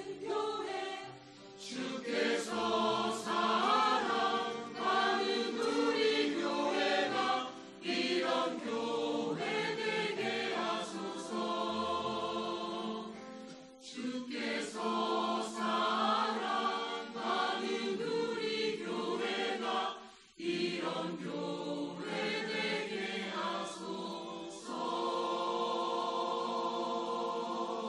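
Mixed church choir of men's and women's voices singing a sacred anthem in several parts, with two brief breaks between phrases, about a quarter and three quarters of the way through.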